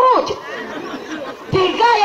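A woman preaching: her voice trails off, about a second of low crowd chatter fills the pause, then her voice starts again.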